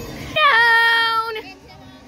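A child's voice holding one high, steady note for about a second, like a sung or squealed "eee".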